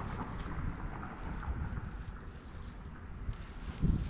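Wind buffeting the microphone, a steady low rumble, with a few faint clicks.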